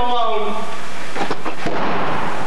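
A sung line ends early on, and about a second in audience applause starts and keeps going.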